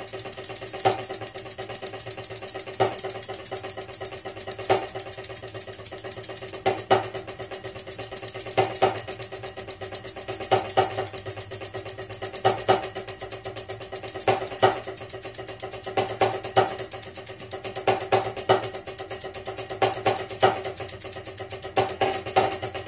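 Percussion ensemble music: a fast, steady high tick runs under two held pitched tones, with heavier accented hits about every two seconds.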